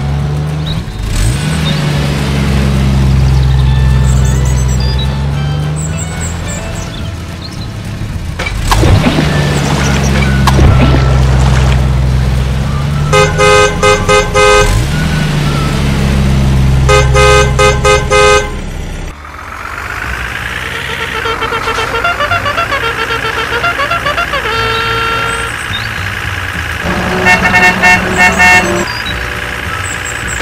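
Dubbed cartoon-style car sound effects: a low engine drone that swells and dips, broken twice near the middle by quick runs of horn toots. About two-thirds of the way in it gives way to a rising electronic whine and runs of beeping tones.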